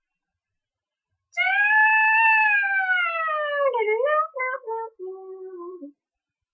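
A child's voice sings a long, high wordless note that slowly slides downward, then breaks into a few short, lower notes before cutting off.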